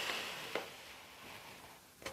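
A quiet pause: a faint hiss that fades away, with one soft click about half a second in.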